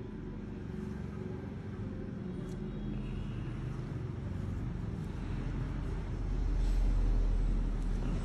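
Low background rumble that swells louder about six to seven seconds in, then eases off near the end.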